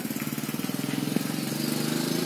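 A small engine running steadily: a low hum with a fast, even pulse.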